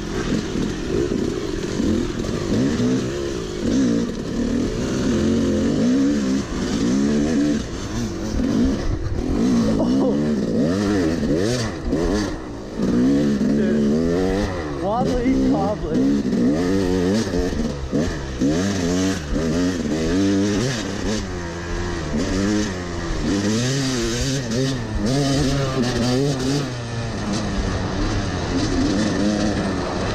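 Yamaha YZ250 two-stroke dirt bike engine being ridden hard on a trail, its pitch rising and falling every second or two as the throttle is worked and the gears change.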